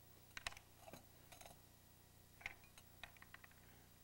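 Faint, scattered clicks and ticks of a metal drawing compass being handled and set down on paper while measurements are marked, with a quick run of small ticks near the end.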